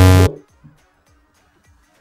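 A short, harsh, low-pitched game-show buzzer that cuts off abruptly about a quarter second in, followed by near silence.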